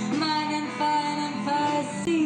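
Hard rock band playing live, a woman singing lead in sustained notes over the guitars.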